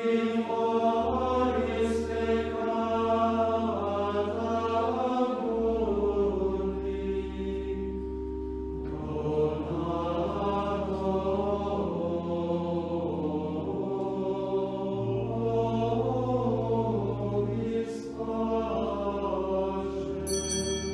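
A choir singing slow sacred music, with held low bass notes under several voice parts and the chord changing every two to three seconds.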